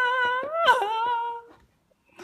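A woman's voice giving a long, high, held wail, a play-acted cry for a toy character. It breaks and drops lower partway through and stops about a second and a half in.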